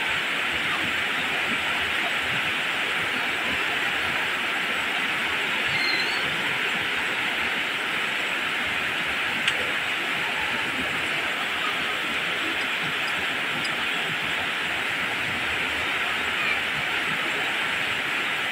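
Heavy tropical rain falling steadily on leaves and wet ground, a constant even hiss with a single faint tick about halfway through.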